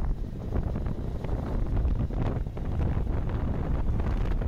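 Wind buffeting the microphone of a camera on a moving vehicle, a steady low rumble with no clear engine note.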